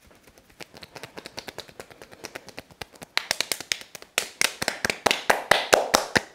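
Hands striking a calf muscle in rapid percussion massage strokes (tapotement), a quick run of light slaps, several a second. The strokes grow louder from about three seconds in.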